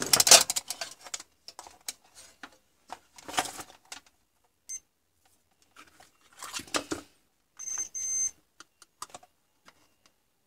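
Clattering and rustling as a monitor's power-supply circuit board is handled and turned over on a towel, in three bursts of clicks about three seconds apart. Near the end comes one short, high electronic beep, less than a second long.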